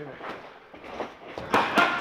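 Boxing gloves striking focus mitts: a couple of lighter hits, then two loud smacks about a quarter second apart, about one and a half seconds in.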